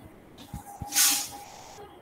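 A short hiss, about half a second long, about a second in, over faint background noise.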